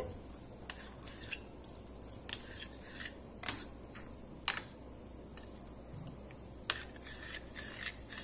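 A spoon stirring curd with sliced onions in a glass bowl: faint, soft mixing with a few light clicks of the spoon against the glass.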